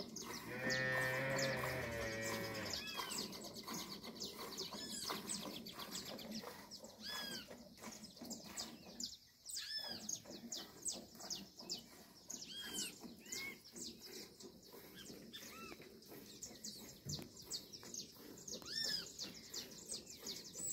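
A cow mooing once, a drawn-out call of about two and a half seconds, near the start. Birds singing throughout, with many short repeated chirps.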